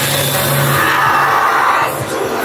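A loud, drawn-out yell from a scare actor at close range, held for about a second, over a loud haunted-maze soundscape.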